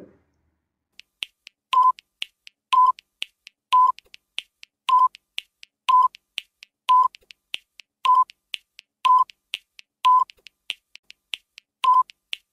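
Quiz countdown timer sound effect: a short beep about once a second, with faint quick ticks between the beeps, starting about two seconds in.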